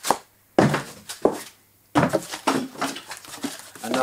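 Folded cardboard packing pieces being handled and set down on a wooden table: a knock right at the start, a sharp scrape about half a second in, a click near a second and a quarter, then a busier run of knocks and rustles over the last two seconds.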